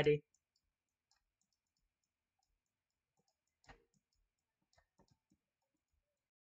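Faint clicks of a stylus on a writing tablet during handwriting: one click about three and a half seconds in, then a few smaller ticks about a second later, with near silence around them.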